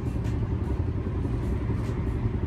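Outdoor ambience: a steady low rumble with no distinct events.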